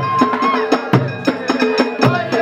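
A group of men singing a folk chant together over fast, sharp percussion strikes, about four to five a second, with deeper drum beats among them.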